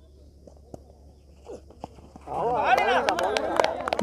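A few faint knocks, then from about two seconds in several men's voices calling out over one another on the cricket field.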